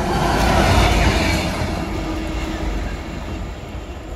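Class 66 diesel freight locomotive running through the station: loud engine rumble over wheel and rail noise, with one steady hum. It peaks about a second in, then slowly eases.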